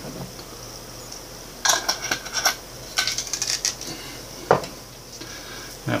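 Small yeast jar being handled and capped: two clusters of light clicks and rattles, then a single sharp knock near the end.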